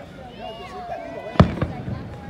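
An aerial firework shell bursting with one sharp bang about one and a half seconds in, followed by two fainter pops.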